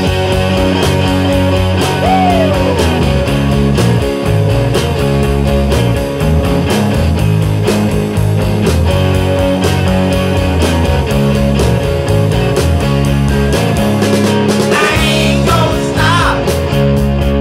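Rock music soundtrack with guitar and a steady beat.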